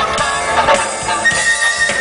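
Funk band playing live, with a long steady high note coming in a little past halfway and held.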